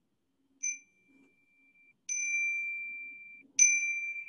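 A single-pitched chime struck three times, about a second and a half apart, each strike ringing out. It is the theatre call-to-seats chime, answered with "we've got a couple of minutes" before the show.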